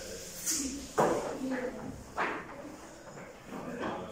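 Boys' voices in a changing room: scattered talk and calls, with two louder sudden calls about one and two seconds in.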